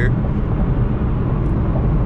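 Steady low drone of road and engine noise inside a Chevrolet Camaro ZL1's cabin while it cruises at highway speed.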